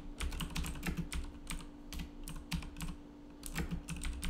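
Computer keyboard typing: a quick, irregular run of keystrokes, with a brief pause a little before the end and then more keys.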